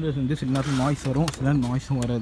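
Speech only: a man talking continuously, with no other sound standing out.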